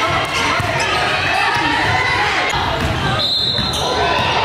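Live sound of a basketball game in a large gym: a ball dribbled on the hardwood court and indistinct voices of players and onlookers echoing in the hall. A brief high whistle sounds near the end.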